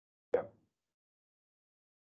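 A single short knock about a third of a second in, sharp at the start and fading quickly; otherwise silence.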